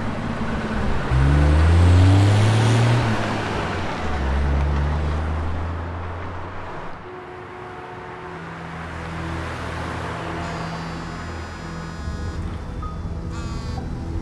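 A small minivan's engine, stiff from sitting in the cold, revved hard with the pitch rising twice, then running on steadily. About seven seconds in it gives way to soft street traffic under sustained music.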